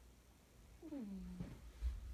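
A short vocal sound about a second in, gliding down in pitch and then holding briefly, followed by a low thump near the end.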